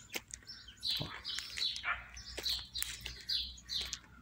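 Small birds chirping, short high chirps repeating two or three times a second.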